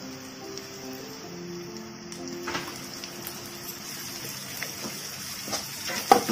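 Background music over food sizzling in a frying pan. The sizzle grows louder about two seconds in, and a few light taps of a slotted spoon on the pan follow.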